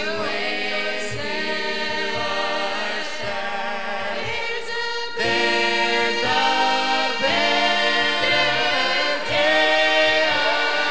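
A small mixed choir of men and women singing a gospel song together, growing louder about halfway through.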